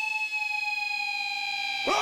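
A single held electric guitar feedback tone rings on after the heavy metal band cuts out, sliding slowly down in pitch at a steady level. A shouted voice breaks in near the end.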